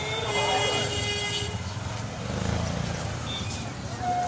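Busy street-market traffic: small motor-tricycle and tuk-tuk engines running close by, swelling about halfway through, with a vehicle horn held for about a second and a half at the start and people's voices.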